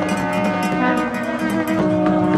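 Ceremonial side-blown horns sounding long, overlapping held notes that shift pitch about every second, with a few sharp drum-like strokes.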